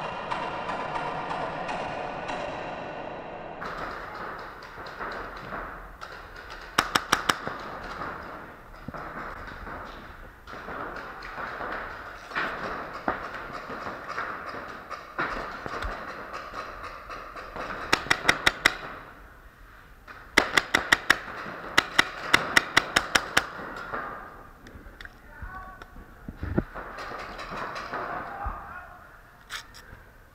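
Paintball markers firing in rapid strings of sharp pops: a short string about seven seconds in, another around eighteen seconds, and a longer string of about a dozen shots from about twenty to twenty-three seconds, over a steady background of indoor arena noise.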